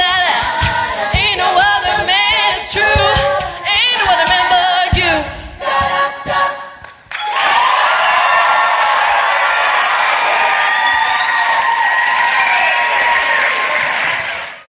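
All-female a cappella group singing, a soloist over the group's voices, with wavering held notes; the singing ends about six seconds in. From about seven seconds in, audience applause and cheering carries on steadily.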